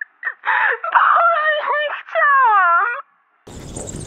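A woman sobbing and wailing in long cries that fall in pitch, sounding thin as if through a phone. The crying cuts off about three seconds in. After a short silence, an outdoor hiss begins.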